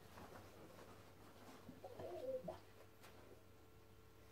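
Near silence, broken about two seconds in by a dog's faint, brief squeaky yawn that lasts about half a second.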